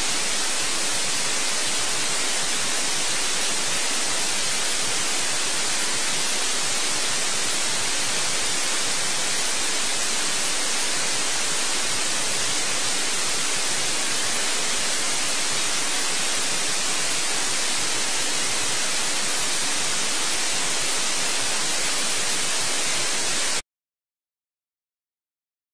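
Loud, steady white-noise hiss, even and strongest in the highs, with a faint thin high tone running through it. It cuts off abruptly near the end into dead silence.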